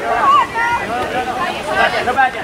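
Several voices from players and sideline spectators calling out and chattering at once, overlapping throughout.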